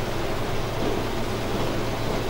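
Steady room noise: an even hiss with a low hum beneath it.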